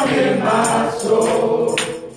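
Gospel singing: a male lead voice on a microphone with a choir, sung lines rising and falling throughout.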